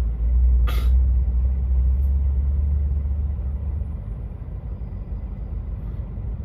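Low, steady engine drone of lorries creeping in slow traffic, easing off after about four seconds. A short, sharp air-brake hiss comes about a second in.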